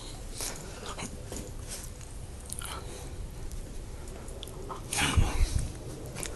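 Mastiff playing with a ring tug toy, with scattered short clicks and knocks of mouthing and grabbing at it. About five seconds in comes a louder scuffle with low thumps as it lunges for the toy.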